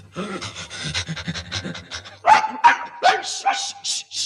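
A small dog, a fox terrier, panting rapidly, then giving several short, louder high cries.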